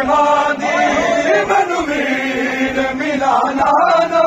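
Men's voices chanting a noha, a Shia mourning lament, in long, held melodic lines, with one note held at length in the middle.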